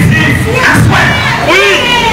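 A man shouting into a microphone while a crowd shouts.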